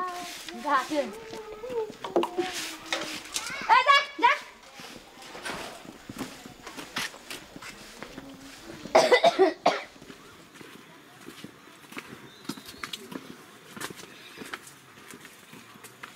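Snatches of voices, a child's among them, with a short loud vocal burst about nine seconds in, then a run of light footsteps on a dirt path.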